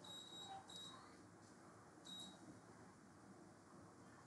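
Near silence, broken by three short, faint, high-pitched beeps: one at the start, one just before a second in and one at about two seconds.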